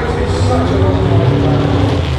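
Indistinct speech over a steady low rumble.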